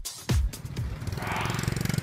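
A last beat of electronic dance music, then a motorbike's small engine idling close by with a fast, even putter.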